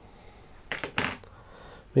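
Two short, sharp snips, about a third of a second apart, of fly-tying scissors cutting away the waste foam and thread ends at the hook.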